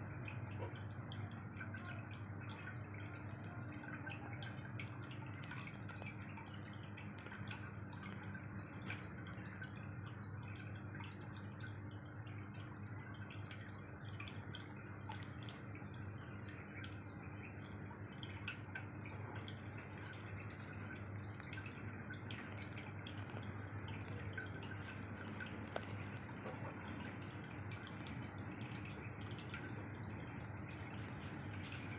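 Aquarium water trickling and dripping steadily with small crackling drips, over a low steady pump hum.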